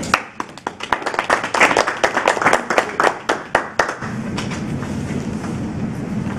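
Small audience clapping for about four seconds, then stopping, leaving a steady low room hum.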